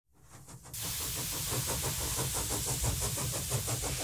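Steam engine running under the title sequence: a steady hiss of steam with a fast, even beat, fading in from silence over the first second.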